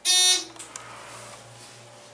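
ThyssenKrupp hydraulic elevator's arrival signal: one short, loud buzzer-like electronic beep right at the start, lasting about a third of a second, marking the car's arrival at the second floor. A fainter rushing sound follows.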